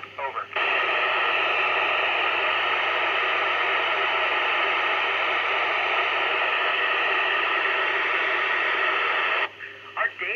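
Loud, steady FM receiver hiss from a Yupiteru multi-band scanner tuned to the ISS downlink on 145.800 MHz: the open-squelch noise heard when the station stops transmitting between answers. It cuts off suddenly near the end as the signal returns, with a moment of radio speech at the start and again just after.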